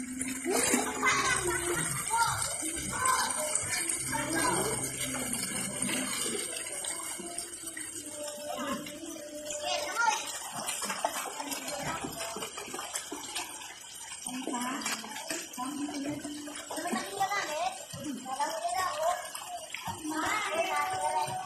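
Indistinct talking throughout, a child's voice among the voices, over a steady hiss.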